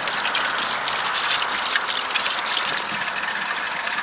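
Water running steadily from the metal spout of a stone wall fountain and splashing over hands being washed under it.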